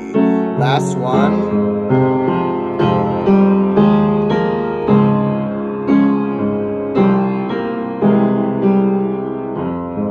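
Keyboard piano playing a vocal warm-up accompaniment: chords struck about once a second, each ringing and fading before the next.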